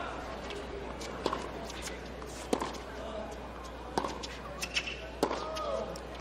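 Sharp single taps of a tennis ball bounced on the hard court between points, irregularly spaced about a second apart, over a low steady arena hum and faint crowd voices.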